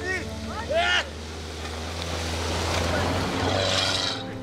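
A 4x4 powering through deep soft sand, its engine and spraying sand and dust making a rushing noise that builds toward the end. Over it, sustained background music fades out, and a couple of short rising-and-falling shouts come in the first second.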